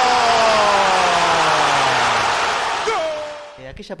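A TV football commentator's long drawn-out goal cry, one held note slowly falling in pitch, over a stadium crowd cheering a goal. The cry ends about two seconds in, and the crowd noise fades out shortly after.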